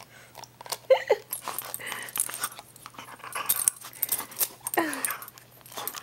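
Yellow Labrador retriever playing with and mouthing a rubber chew toy: irregular clicks and rustles from its mouth, the toy and its collar tags, with two short falling whines, about a second in and near five seconds in.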